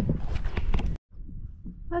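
Wind rumbling on the microphone with several footsteps through rough moorland grass. The sound cuts off abruptly about a second in, and fainter wind follows.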